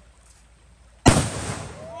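A jumbo homemade firecracker, its charge bundled in cashier receipt paper, goes off with a single sharp bang about a second in, the blast dying away over most of a second.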